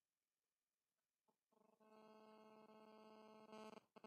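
Near silence; about halfway through, a faint steady held tone with several evenly spaced pitches comes in and holds until just before the end.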